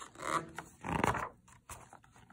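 A page of a paperback picture book being turned by hand: two short papery swishes, the louder about a second in.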